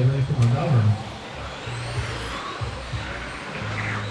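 Electric RC touring cars running around an indoor track, their motors giving a high whine that rises in pitch as they accelerate, heard a couple of seconds in. A man's voice over a PA is heard in the first second.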